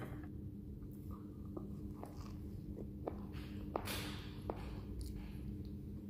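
Faint sounds of a man biting into a soft-bun burger: soft scattered clicks and mouth noises, a little louder about four seconds in, over a steady low hum.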